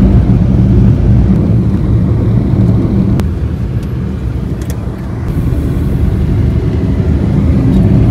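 Steady low rumble of a car driving, heard from inside the cabin: engine hum with road and tyre noise, easing off slightly about four to five seconds in before building again. A single faint click about three seconds in.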